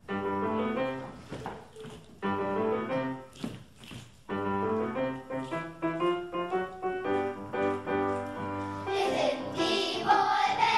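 Piano playing an instrumental passage in phrases; near the end a children's choir comes in singing.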